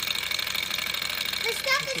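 Sunnytech M14-03-S hot-air Stirling engine running fast on its alcohol burner flame, its piston and flywheel making a rapid, even mechanical rattle.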